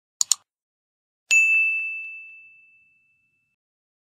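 Two quick clicks, then a single bright bell-like ding that rings out and fades over about a second and a half: the sound effects of a subscribe-button animation.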